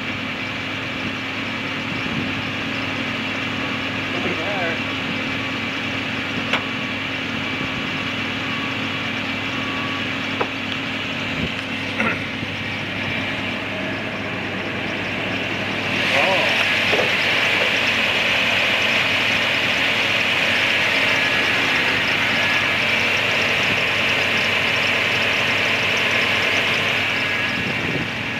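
Toyota Sequoia's 4.7-litre V8 idling steadily, with a few light clicks. About sixteen seconds in, the idle gets louder and hissier, as it does once the hood is open.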